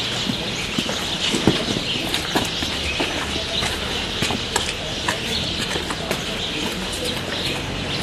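Many birds chirping at once in a steady, dense chorus, with scattered short knocks close by.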